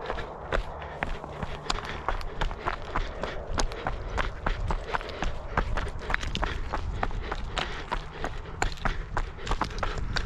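Running footsteps of a trail runner descending a stony hill path, quick footfalls at about three a second. A steady low rumble runs underneath.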